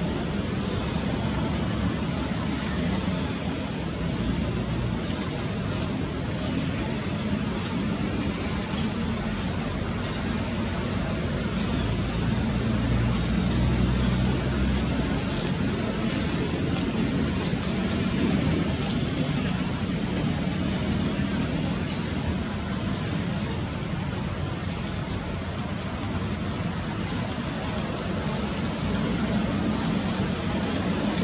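Steady low rumbling background noise, even throughout, with no distinct calls or knocks standing out.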